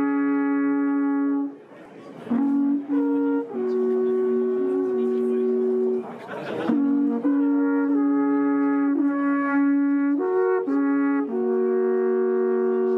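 Two horns play a slow tune in two parts, made of long held notes that change pitch in steps, with short pauses between phrases.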